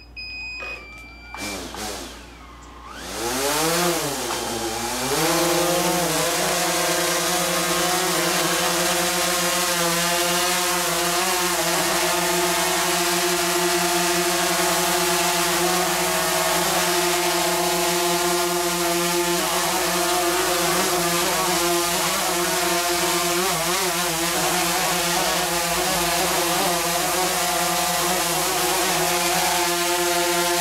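DJI Phantom 3 Advanced quadcopter's four motors and propellers running. In the first few seconds the pitch sweeps up and down as the motors spin up and the drone lifts off, then it settles into a steady buzzing whine as it hovers.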